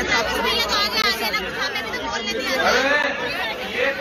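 Men's voices talking over one another in a crowd, an unclear babble of speech.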